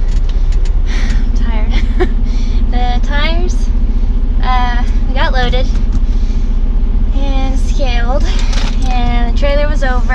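Semi-truck's diesel engine idling as a steady low drone heard inside the cab, with a steadier hum joining about a second in, under a person's talking and laughing.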